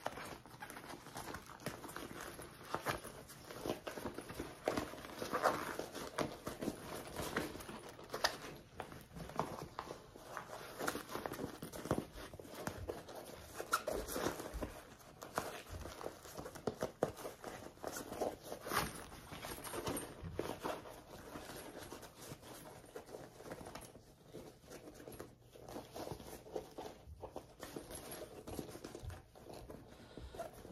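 Nylon and cotton fabric rustling and crinkling in irregular handling noises as a zippered bag is pulled right side out through the opening in its lining.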